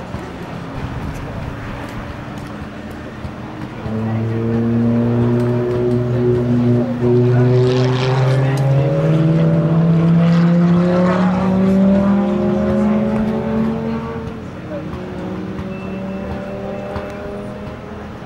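Lamborghini Gallardo's V10 engine pulling away hard. It comes in loudly about four seconds in, its note climbing steadily in pitch for several seconds, then fades as the car draws off into the distance.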